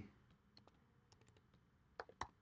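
Faint computer keyboard keystrokes, a few soft scattered clicks over near silence.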